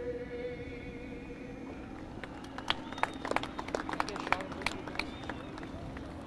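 A singer's long held note fades out, then scattered sharp handclaps and applause from the grid crowd, over a steady murmur of people.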